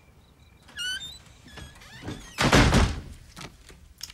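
A door squeaks briefly on its hinges with a rising pitch about a second in, then shuts with a loud thud about two and a half seconds in.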